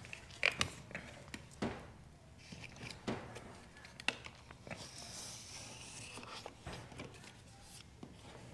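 Small plastic tint squeegee working wet window film along the bottom edge of a car door window: a few faint clicks and taps of the tool on the glass, then a soft scraping stretch about five seconds in.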